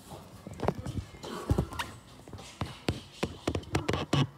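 Close, irregular sharp knocks and taps, coming faster, several a second, in the second half.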